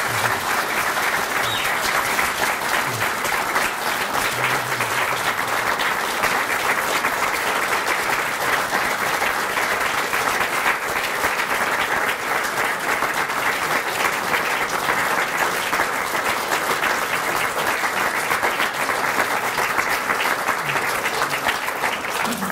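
A large audience applauding steadily and at length, with dense, even clapping throughout.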